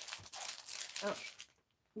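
Clear plastic page-protector sheets crinkling and crackling as they are handled and pulled about, cutting off suddenly near the end.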